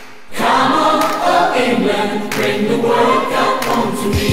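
Music: a choir singing in a football anthem, coming back in after a brief dip at the start.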